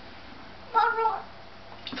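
A toddler's short, high-pitched vocal sound about a second in, rising and then falling in pitch.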